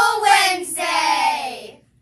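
A group of children calling out together in a sing-song unison, with two long drawn-out words that slide slightly down in pitch and stop shortly before the end.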